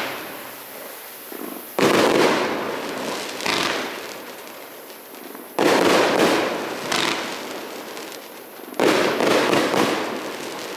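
Broad BF2530 25-shot fan-shaped firework cake firing volleys of shots. There are three loud launches, about two, six and nine seconds in, with smaller ones between them. Each dies away over a second or two as the stars burst.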